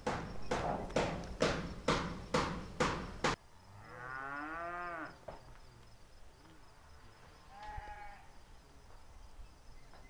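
Footsteps crunching on gravel, about two a second, stopping a little over three seconds in. Then a long, wavering animal call of about a second, and a shorter, higher call near the eight-second mark.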